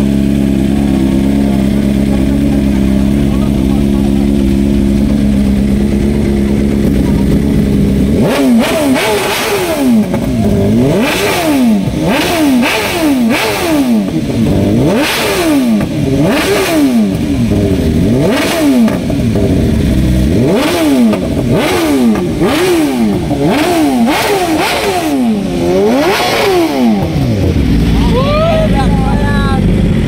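Sport motorcycle engine idling steadily, then from about eight seconds in revved over and over, its pitch climbing and dropping roughly once a second for close to twenty seconds. Near the end it settles back to idle.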